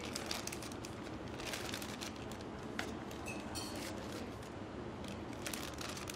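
Resealable plastic bag crinkling and rustling as a raw chicken half is pushed into it with metal tongs, with small scattered clicks over a steady background hum.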